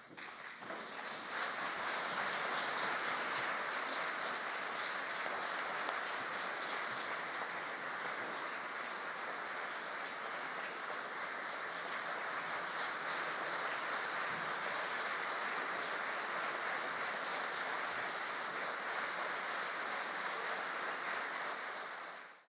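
Audience applauding: dense clapping that swells over the first couple of seconds, holds steady, and dies away near the end.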